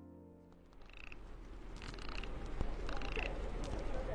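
A quiet gap between tracks in a music mix: the last notes fade away, then a noisy ambient texture swells in with a short high chirping call about once a second, like animal calls in a nature soundscape.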